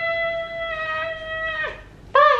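A single high note held steady in pitch for nearly two seconds, then sliding down and stopping shortly before the end.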